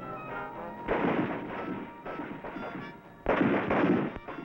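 Rifle fire on a firing range, in two loud bursts of shots about a second in and again near the end, over background music.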